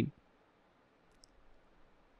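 A faint computer mouse click a little over a second in, over quiet room tone.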